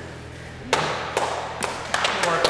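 Four sharp knocks, the first and loudest about two-thirds of a second in, the others following about every half second, over a low steady room hum.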